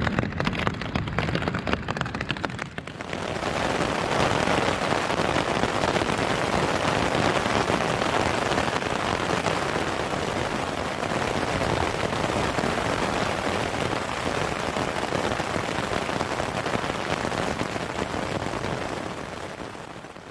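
Rain drumming on a tent's fabric, heard from inside the tent. The drops are separate at first, then the rain comes down harder from about three seconds in, and the sound fades out near the end.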